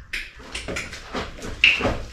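African grey parrot making short squawks, one just after the start and a louder one about a second and a half in.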